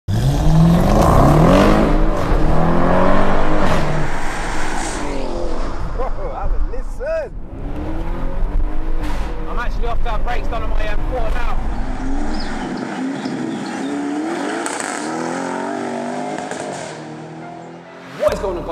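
Car engine accelerating hard, loud, its pitch climbing repeatedly through quick upshifts, then running on more quietly under a man talking.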